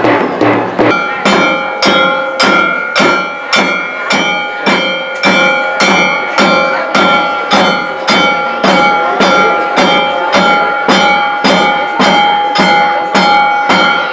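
Temple festival music: percussion beating a steady rhythm of about two and a half strokes a second, joined about a second in by a long held pitched note.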